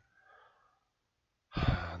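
A man's short, soft breath between phrases, then a moment of dead silence before his speech resumes about one and a half seconds in.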